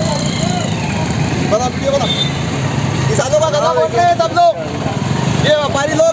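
Vehicle engines idling in a stopped line of traffic, a steady low running sound, with people's raised voices breaking in over it several times.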